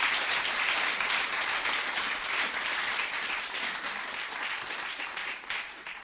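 Audience applauding after a talk, a dense steady clapping that eases off a little near the end.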